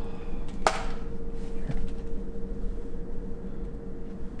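Handheld camera handling and footsteps on a debris-strewn floor over a steady hum and low rumble, with one sharp knock a little under a second in and a few faint scuffs after it.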